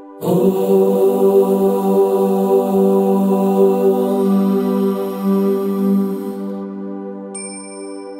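A voice chanting one long "Om", beginning about a quarter second in and fading out after about six seconds, over a steady ambient music drone. A high bell-like chime rings out near the end.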